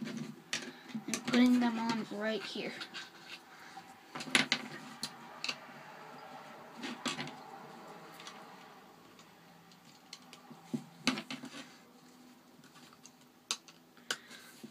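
Plastic Lego pieces being handled and pressed onto a Lego baseplate: a handful of sharp, separate clicks and snaps spread through, with light rustle of handling between them.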